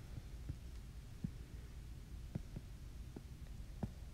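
A steady low hum with about six faint, soft taps spread across it: a stylus tapping on a tablet screen.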